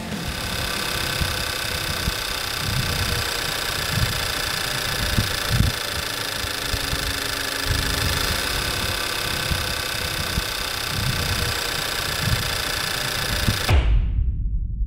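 Audi A5 Sportback's turbocharged TFSI petrol engine idling steadily, heard close up in the open engine bay, with a steady mechanical whir. The sound cuts off suddenly just before the end.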